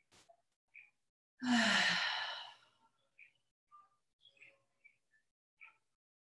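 A woman's long, breathy sigh, starting about a second and a half in and lasting about a second, her voice falling in pitch as she exhales. Faint small rustles and ticks follow.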